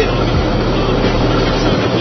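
Semi-truck cab at highway speed: a steady low engine drone under continuous road and wind noise.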